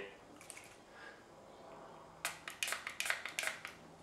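Finger-pump spray bottle sprayed three times into a tall drinking glass: short, sharp spritzes in quick succession in the second half.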